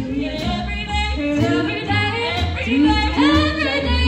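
Four female vocalists singing together in harmony over a live jazz big band accompaniment, with low bass notes stepping along beneath the voices.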